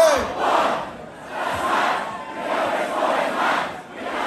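Large concert crowd shouting and cheering in swelling waves once the music stops, with no backing track under it.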